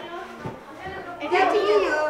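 Children's voices talking in a room, growing louder and livelier about halfway through.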